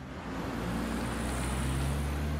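Cartoon sound effect of a small car's engine running as it pulls away, swelling in level about half a second in.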